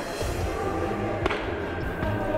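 Background music, with one sharp pop about a second in: a baseball smacking into a catcher's mitt.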